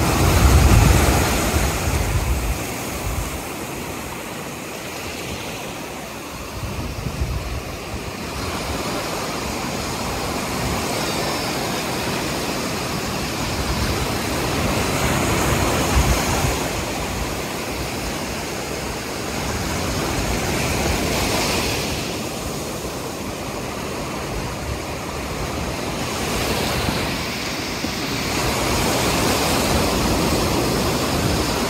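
Ocean surf breaking and washing up the sand, swelling and fading with each wave.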